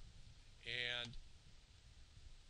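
A man's held, drawn-out "and", with a faint computer-mouse click at the start and low room noise around it.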